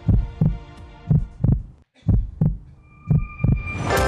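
Heartbeat sound effect: four double thumps, lub-dub, about one a second, with a brief silence before the third. A sustained music chord swells in just before the end.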